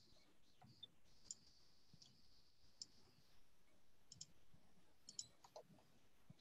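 Near silence broken by a few faint, scattered clicks of someone working a computer, some single and some in quick groups of two or three.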